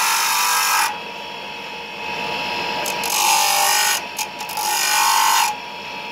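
A chunk of pink rock salt is ground against a spinning disc on a bench motor. A loud rasping grind comes each time the salt is pressed to the wheel, three bouts in all, with the motor's steady whine between them, as the salt is shaped by hand into a heart.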